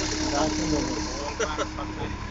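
Skid-steer loader's engine running steadily while the machine turns in place, with two brief sharp clicks about one and a half seconds in.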